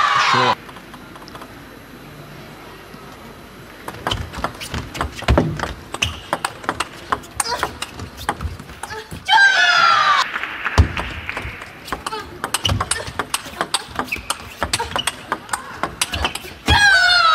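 Table tennis ball clicking sharply off the paddles and table in quick succession during a rally. A player's loud shout falls in pitch about nine seconds in, and then single ball clicks go on.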